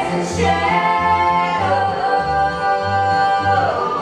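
Bluegrass band playing live: two women's voices hold one long sung note together over an evenly pulsing upright bass and acoustic strings.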